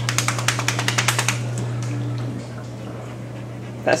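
A wet greyhound shaking water off her coat, a fast flapping rattle of about ten slaps a second that lasts about a second and a half.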